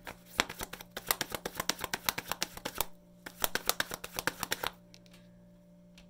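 Tarot deck being shuffled by hand: a fast run of card flicks for about two and a half seconds, a short break, then a second run that stops about a second before the end.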